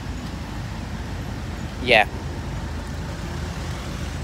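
Steady low rumble of outdoor street background, with a man saying "yeah" once about two seconds in.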